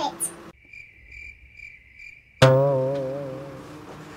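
Cricket chirping: a high trill pulsing about twice a second, starting and stopping abruptly, for about two seconds. Then a sudden held musical note with a wavering pitch that fades out.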